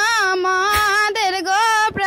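A high-pitched voice singing in long, wavering held notes, with a brief break near the end.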